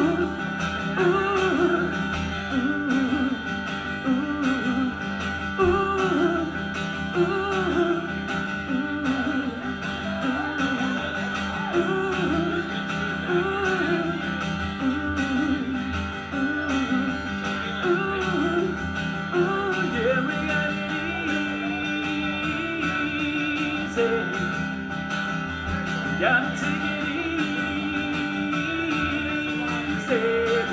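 Live acoustic guitar played in a steady strummed rhythm, with a bending melody line over the chords.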